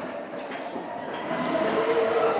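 Matterhorn Bobsleds sled rolling along its tubular steel track, a steady rumble and rattle heard from aboard the car. A sustained tone comes in over the last half second.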